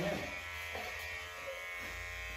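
Corded electric hair clippers running with a steady buzz, held against the head as they cut long hair.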